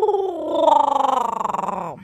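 A long, wavering voice-like call that slides down, then up and down in pitch, and cuts off suddenly at the end: the strange sound being made for the baby.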